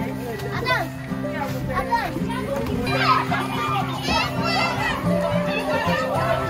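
A crowd of children shouting and chattering excitedly, over background music with long held notes.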